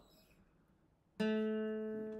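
Steel-string acoustic guitar struck once about a second in, the notes ringing out and slowly fading.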